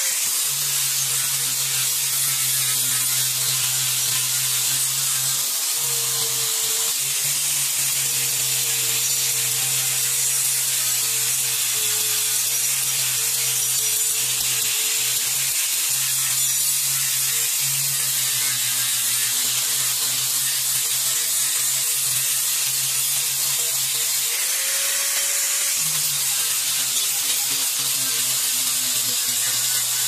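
Angle grinder with an abrasive sanding disc grinding a steel sword blade: a steady motor whine over the hiss of the disc on the steel. The pitch sags a little now and then as the disc is pressed onto the blade.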